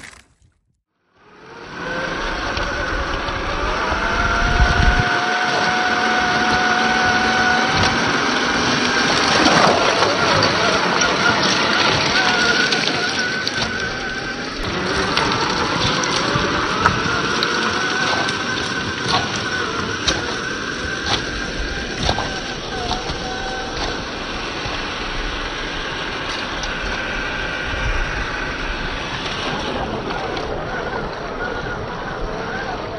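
After a brief dropout at the start, a Traxxas TRX-4 RC crawler's electric motor and gearbox whine steadily as it wades through shallow water, with water sloshing and splashing around the tyres and scattered sharp clicks.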